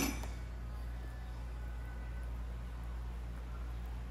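Quiet room tone with a steady low hum; no distinct stirring or other events stand out.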